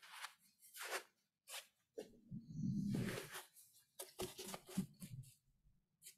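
Faint, intermittent rustling and soft breath sounds from a man shifting in a seated forward bend, with a longer breathy sound about two seconds in.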